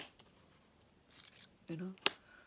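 Thin metal cutting dies being laid onto a magnetic sheet: a sharp click as one snaps down at the start, then a short metallic rasp of dies rubbing and sliding a little over a second in.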